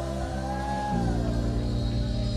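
Live rock band playing: electric guitar, electric bass and drums, with a male voice singing a long, gliding line over them. The bass moves to a new note about halfway through.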